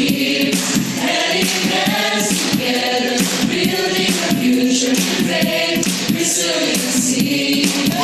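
A choir singing a song with musical accompaniment, at a steady loud level.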